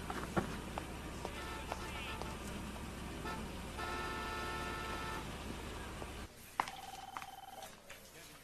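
Street ambience heard from a parked car: a steady low rumble with a few light clicks, and a held chord of steady tones for about a second and a half near the middle. It cuts off suddenly near the end into a quieter room, where a short steady electronic tone sounds.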